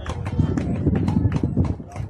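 Rapid, irregular clicking and knocking close to the microphone, several a second, over a low rumble.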